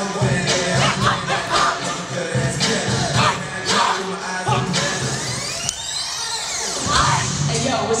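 Music with a steady beat and vocals.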